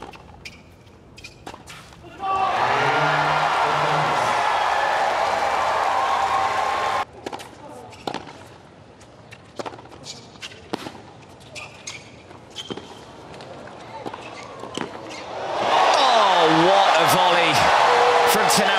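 Stadium crowd cheering and applauding loudly, cut off suddenly about seven seconds in. A tennis rally follows: the ball struck by rackets and bouncing on the hard court about once a second. Near the end the crowd breaks into loud cheers and shouts as the rally goes on.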